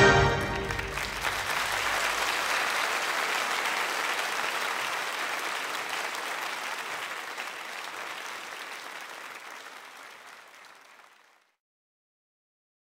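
Live concert audience applauding as the band's final notes die away, the applause fading steadily and ending about eleven seconds in.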